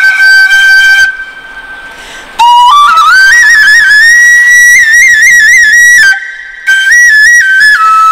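Solo bansuri (bamboo transverse flute) melody. A long held note breaks off about a second in, followed by phrases with quick ornamental turns and trills around a high note, with a brief breath pause about six seconds in.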